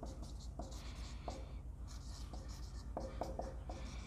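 Dry-erase marker squeaking and scratching on a whiteboard as letters are written in short, quick strokes. A steady low hum lies underneath.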